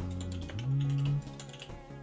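Computer keyboard typing, a run of quick key clicks, over music with deep held bass notes; the loudest bass note sounds from just after half a second to just past one second.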